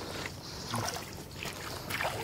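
Shallow water sloshing and dribbling around boots and hands as someone wades and picks eggs out of floodwater.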